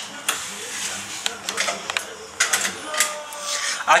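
Seat belt webbing and its buckle hardware being handled on a bus's wheelchair restraint, giving a series of sharp, irregular clicks and rattles. A faint steady tone comes in near the end.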